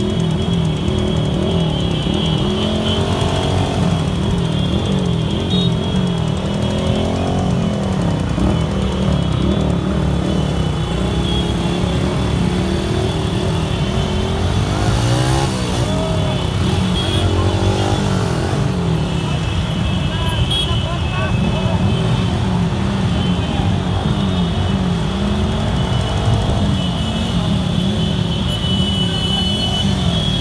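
A crowd of motorcycles and scooters riding together at low speed, many engines running at once and revving up and down, with voices mixed in.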